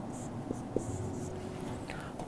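Marker pen writing on a whiteboard: faint scratchy strokes and a few light taps as a word is written and a box drawn around it.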